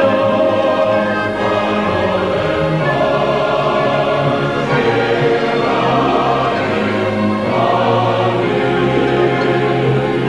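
Orchestral song arrangement with a choir of voices singing long held notes over it.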